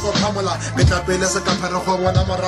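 Hip hop track: a beat with a steady bass line and a kick drum under a rapping voice.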